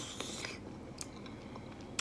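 Faint chewing of a mouthful of green beans and rice, with a few small clicks.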